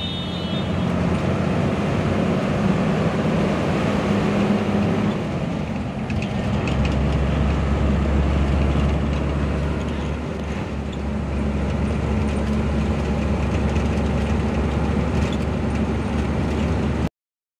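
Engine drone and road noise of a moving passenger bus, heard from inside the cabin; a deeper low hum comes in about six or seven seconds in and holds steady.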